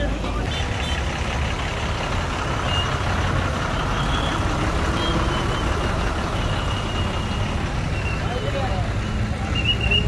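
A truck engine running steadily, with crowd voices over it.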